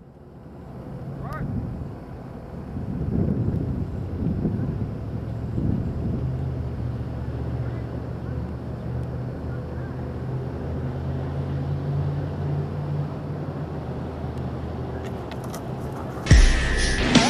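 Road traffic: a steady low hum of vehicle engines going by, with wind on the microphone and faint, indistinct voices.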